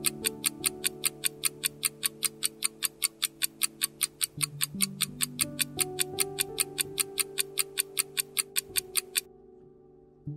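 Countdown clock ticking sound effect, about four ticks a second, over slow sustained background music chords. The ticking stops about a second before the end, leaving the music faint.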